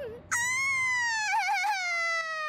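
A cartoon character's high-pitched wordless voice: one long wailing 'ooh' that slowly falls in pitch, with a quick quavering wobble about a second and a half in.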